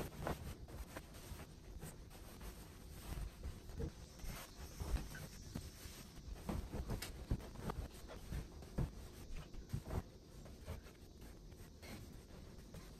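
Cotton bedding rustling as a flat sheet is flapped out over a mattress and a quilted bedspread is spread and smoothed on top, with scattered light knocks.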